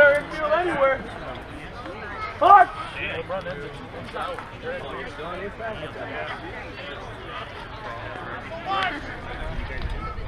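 Men's voices calling out and chatting across an outdoor ball field, with one loud shout about two and a half seconds in.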